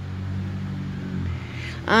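A steady low machine hum, and a woman's voice starting to speak near the end.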